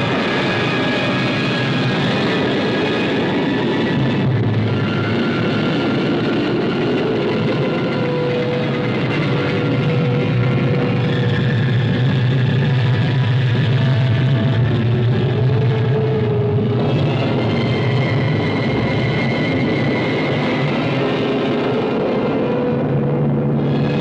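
Film sound effect of a rocket engine during launch and climb, a steady rushing noise, mixed with a film score of long held notes.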